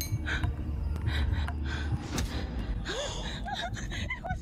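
A frightened woman breathing hard in quick, repeated gasps over a low rumble. Near the end, a high, wavering, tearful voice comes in.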